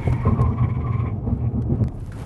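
2010 Toyota Camry braking hard from 60 mph with the accelerator held to the floor: a steady engine and road rumble, with a high whine that fades out about a second in as the brake override cuts the throttle and the engine drops toward idle.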